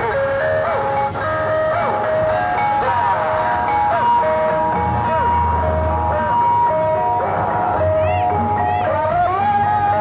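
Loud music played over a parade float's truck-mounted loudspeaker system: a melody of held notes stepping between fixed pitches over a bass line, with a wavering, sliding lead line coming in near the end.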